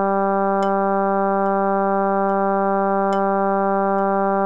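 Synthesizer playing a choral Bass I part: one low note held steady, with a soft metronome click about every 0.8 s and a stronger click on every third beat.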